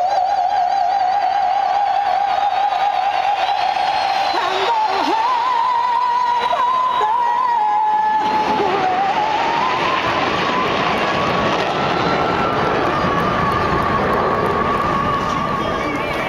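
A female vocalist holds a long, sustained high note live, with vibrato, stepping up in pitch toward the end. From about halfway through, a loud wash of crowd cheering swells beneath the note.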